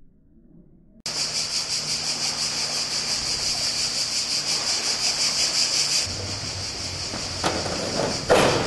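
Cicadas buzzing loudly in a steady, finely pulsing high chorus that starts abruptly about a second in. From about six seconds a low steady hum runs beneath it, and there is a short click near the end.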